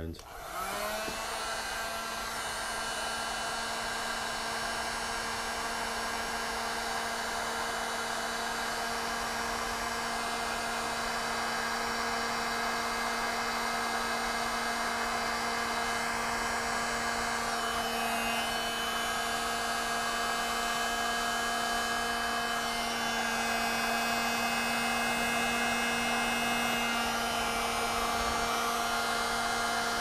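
Handheld electric heat gun switched on, its fan motor spinning up within the first second and then running steadily with a constant hum over a blowing hiss, used to shrink heat-shrink tubing on wire ends.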